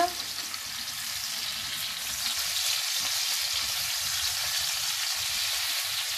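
Sliced mushrooms, diced ham, garlic and chillies frying in olive oil in a pan over full heat: a steady sizzle that grows a little stronger about two seconds in, with the pan being stirred.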